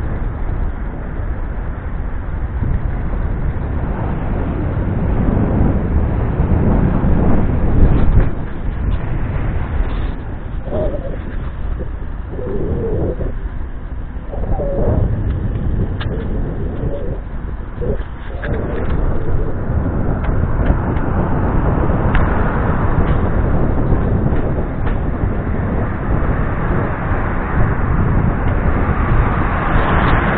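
Wind rumbling on the microphone of a moving camera, with rolling noise that grows louder and hissier in the second half. A pigeon coos in a short series of calls between about ten and eighteen seconds in.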